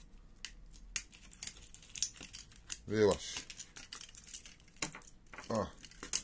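Scattered sharp plastic clicks and crackles as the cylindrical lithium-ion cells of a laptop battery pack are prised out of its plastic case, where they are stuck down with double-sided tape.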